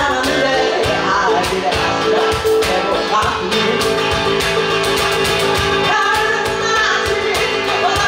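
Live acoustic band: singing over a strummed acoustic guitar and a steady cajon beat.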